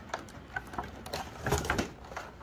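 Clear plastic packaging tray crackling and clicking as a handheld OBD2 scanner is lifted out of it. Scattered small clicks, with a denser cluster about three-quarters of the way through.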